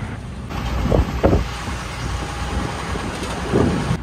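Busy city road traffic: a steady rumble of engines and tyres, swelling louder about a second in and again near the end.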